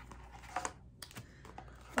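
A few faint, scattered clicks and taps of small items being moved about while rummaging through a box of supplies.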